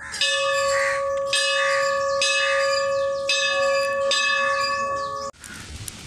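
A bell struck about five times, roughly once a second, each strike renewing a steady ringing tone, then cutting off abruptly shortly before the end.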